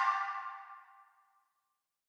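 The song's final sustained note rings out and fades away within the first second, followed by dead silence.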